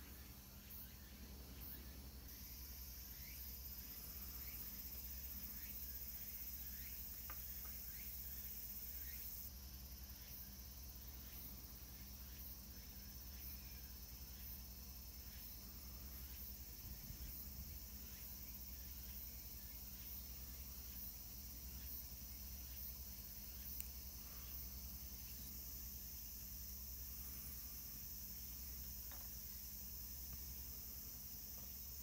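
Faint, steady high-pitched insect chirring over a low hum, with a few light clicks.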